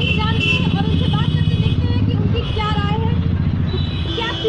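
A loud, steady low engine rumble from a nearby motor vehicle, easing off near the end, with voices over it.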